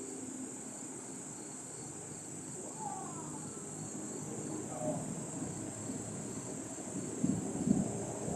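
Night insects chirping in a steady, high, continuous trill over a low murmur of distant voices. Near the end comes a quick cluster of low thuds from distant fireworks bursts.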